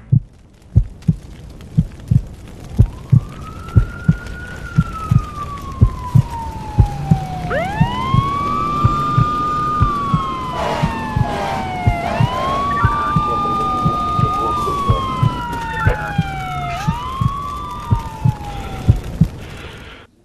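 Emergency-vehicle siren wails: the pitch rises, holds and then slowly falls, with two or three sirens overlapping in the middle. Underneath runs a regular low thumping beat about twice a second, like a heartbeat.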